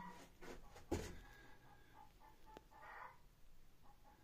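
Near silence: room tone, with one soft knock about a second in and a faint click a little later.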